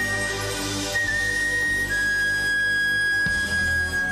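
Chromatic harmonica holding long, pure high notes in a slow jazz ballad. The note breaks and re-sounds about a second in, then steps down a little and is held to the end, over double bass underneath.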